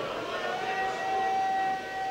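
A man's voice holding one long, steady high chanted note over a public-address system. It slides up at the start and is held for about a second and a half before breaking off.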